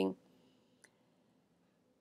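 Near silence with a single faint, short click just under a second in.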